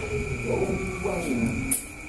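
A man's low closed-mouth hum, sliding down in pitch, as he draws on a cigarette, then a short breathy hiss near the end.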